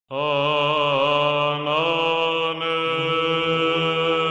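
Intro music of a sustained sung chant-like vocal: long held notes with a slight waver, shifting to a new note a little under two seconds in.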